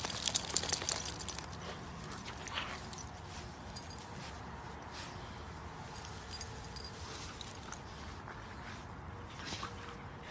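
Husky puppies wrestling on grass: their collar tags and leash clips jingle briefly in the first second, then only soft rustling with scattered small clicks.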